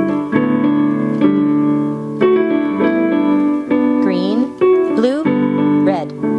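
Digital keyboard in a piano sound, playing held chords with a melody over them, new notes struck every half second to a second. About two-thirds of the way through, a voice glides up and down in pitch twice over the playing.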